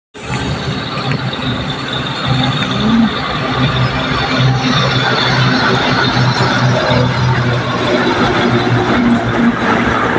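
Heavy diesel lorries driving past on a road, the nearest a MAN lorry pulling a container trailer, its engine humming steadily over the road noise.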